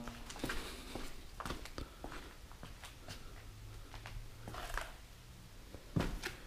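Faint footsteps with light scuffs and scattered clicks on a debris-strewn floor.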